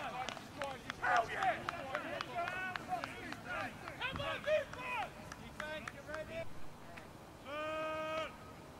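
Football players shouting short calls across the field, many voices overlapping, with a few sharp claps or knocks among them. Near the end a single steady held note sounds for under a second.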